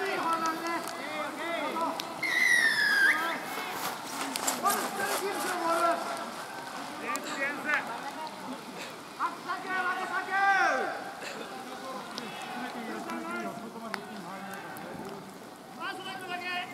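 Players' and spectators' voices shouting and calling out across a rugby pitch, with a loud falling shout at about two seconds in, another near ten seconds, and a few sharp claps in between.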